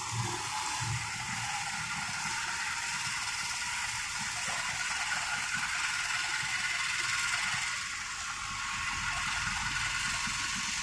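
Steady hiss of car tyres spraying through water on a rain-soaked road, mixed with the rain itself, with a few low thumps in the first second.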